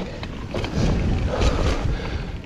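Mountain bike tyres rolling over a dry dirt trail, with wind buffeting the camera microphone and a few short clatters from the bike about one and a half seconds in.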